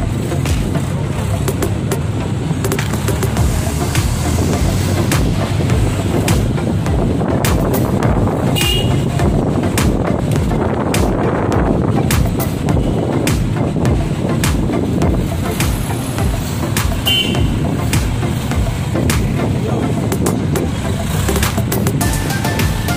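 Steady engine and road noise of a vehicle riding in city traffic, with frequent short knocks, and two brief high-pitched sounds about nine and seventeen seconds in.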